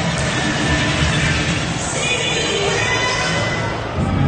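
A large crowd cheering and shouting, with shrill shrieks rising over it about halfway through.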